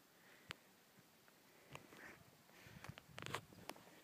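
Near silence, with a few faint footsteps scuffing on pavement, mostly in the second half.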